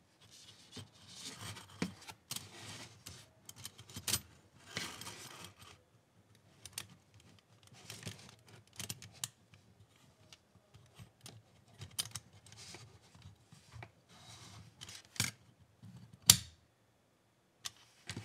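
Stainless steel stove panels and a gas burner being handled and fitted together by hand: scattered light metal clicks and short scrapes, with a few sharper clicks.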